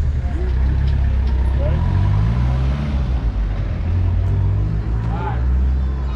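Old car's engine heard from inside the cabin, a deep steady rumble that rises in pitch as the car accelerates about two seconds in, then settles into a steady run.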